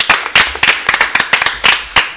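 A few people clapping by hand, the separate claps distinct and coming quickly and unevenly.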